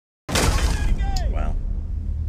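Film soundtrack: after a moment of dead silence, a sudden loud crash with a deep rumble under it, then a short falling tone about a second in.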